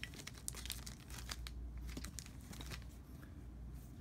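Faint crinkling of a small clear plastic bag holding a sneaker hang tag, handled in the fingers, with soft scattered crackles, densest in the first second or so.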